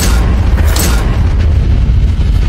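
Cinematic intro sound effect: a loud, deep booming rumble with sharp hits, one at the start and another just under a second in.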